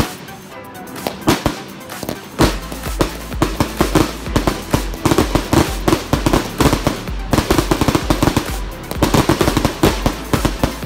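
Brothers Fireworks Jumbo Crackling Ball fireworks bursting into crackle: a rapid run of sharp pops and cracks that grows denser from about two and a half seconds in.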